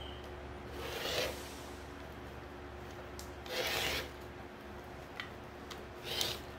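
Rotary cutter slicing through resin-bonded polyester batting along an acrylic ruler on a cutting mat, in two short strokes, about one second and three and a half seconds in.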